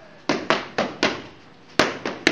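Boxing gloves smacking into focus mitts: a quick run of four punches, about four a second, then a harder single punch near the end.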